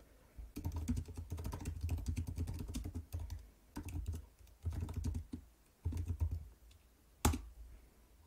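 Computer keyboard typing: runs of quick key clicks as a terminal command is typed, then a pause and one louder single keystroke near the end as the command is entered.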